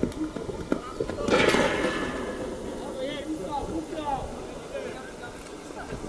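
Voices calling and shouting across an outdoor football pitch, with one loud shout about a second and a half in and fainter calls a little later, over open-air ambience.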